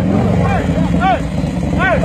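Harley-Davidson bagger's V-twin engine idling steadily, with voices calling out over it a few times.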